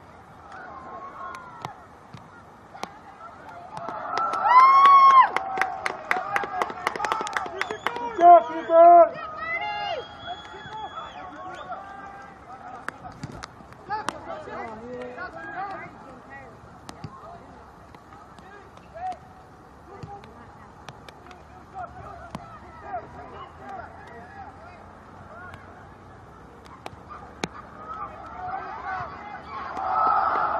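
Spectators and players shouting at a soccer match: loud, drawn-out yells about four to ten seconds in, with a quick run of sharp claps among them, then quieter scattered calls over outdoor background noise.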